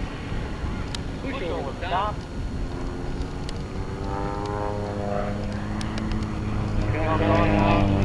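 Van's RV-4 light aerobatic plane's piston engine and propeller droning in flight, a steady note that grows louder over the last few seconds.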